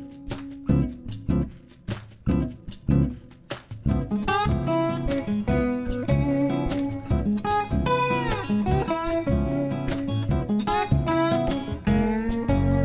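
Background music on acoustic guitar: sharp rhythmic strokes at first, then a plucked melody with sliding notes from about four seconds in.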